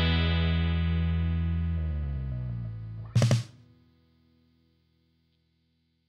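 The last chord of a rock song on distorted electric guitar, held and fading away. About three seconds in comes a short loud burst, and the sound ends about a second later.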